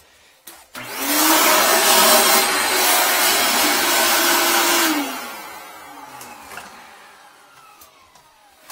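Wet/dry shop vacuum switched on for about four seconds, its motor running loud with a steady hum as it sucks through the toilet, then switched off and winding down with a falling whine. The suction is an attempt to pull out an object lodged sideways in the toilet's trap.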